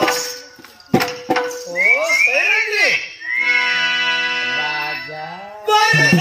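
A voice singing a verse of a Telugu folk-drama song, with winding, gliding phrases followed by a few held notes that step down in pitch. Two sharp strikes come near the start and about a second in, and fuller accompaniment comes in loudly near the end.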